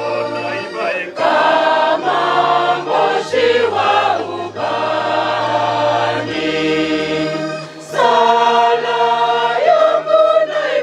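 Choir singing a hymn, accompanied by an electronic keyboard holding low bass notes that change pitch every second or two.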